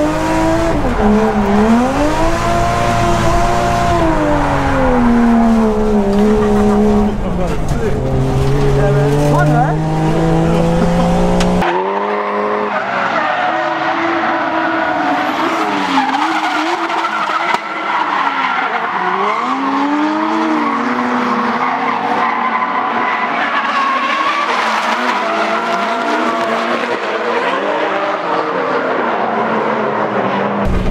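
Toyota JZX100 Chaser's straight-six revving hard through a drift, its pitch swinging up and down with the throttle, heard from inside the cabin. About twelve seconds in the sound switches to trackside: the car drifting with tyres squealing and the engine rising and falling more thinly.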